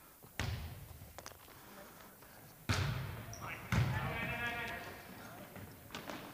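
A volleyball struck in play in a gym: a serve about half a second in, then two more hard hits on the ball near three and four seconds in, each a sharp smack that rings off the walls of the hall.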